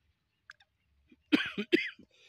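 Caged francolin calling: two loud, harsh notes close together, about 1.3 seconds in.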